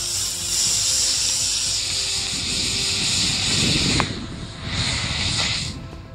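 Model rocket motor burning at liftoff: a loud, steady rushing hiss that holds for about four seconds, broken by a sharp click, then a shorter second burst of hiss that cuts off near the end.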